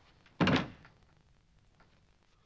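A wooden door pushed shut by hand, closing with one short knock about half a second in.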